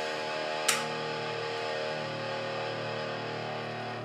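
Vintage V100 PGM Lemon Drop electric guitar holding one distorted chord, left to ring and sustain steadily, with a single sharp click about a second in.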